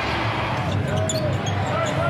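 Steady arena crowd noise during live basketball play, with a ball being dribbled on the hardwood court.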